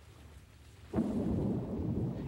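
Quiet at first, then about a second in a sudden, steady underwater rumble of churning, bubbling water.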